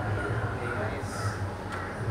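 A steady low hum with faint background voices and bird calls.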